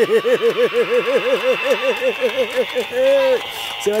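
A voice warbling in quick, even pulses, about seven a second, then holding one steady note briefly near the end.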